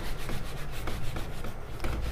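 Felt whiteboard eraser wiping marker off a whiteboard in quick repeated back-and-forth strokes.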